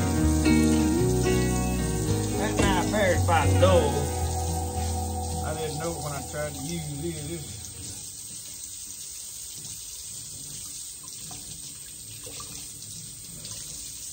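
Background music with sustained, wavering notes fades out over the first half. Under it and after it, a kitchen tap runs steadily into a stainless steel sink.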